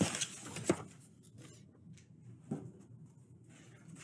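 Cardstock craft being handled: a brief paper rustle at the start, then two light taps, one just under a second in and one about two and a half seconds in, over faint room tone.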